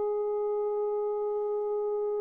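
Film score music: a single flute note, pure and steady, held without a break.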